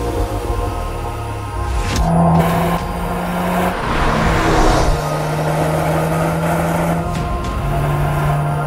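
Background music with sustained low notes, over a Volkswagen Golf GTI Mk8's turbocharged four-cylinder car driving past. Its rush swells from about two seconds in, peaks around four and a half seconds, then fades back under the music.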